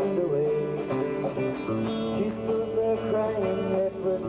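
Live band playing, with electric guitars over drums, recorded on a camcorder microphone.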